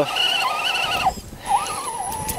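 Axial SCX10 RC crawler's electric motor and gears whining, the pitch wavering up and down with the throttle as the truck spins its wheels on a muddy climb. The whine cuts out about a second in and starts again half a second later.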